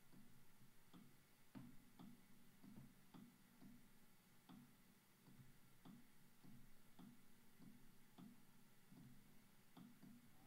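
Near silence with faint, regular ticking, about two or three ticks a second.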